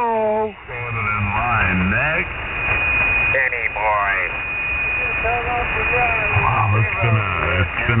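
Garbled, unintelligible voices received over single-sideband shortwave radio. The sound is thin and band-limited, with static hiss underneath. A steady high heterodyne whistle runs from about a second in until about halfway through.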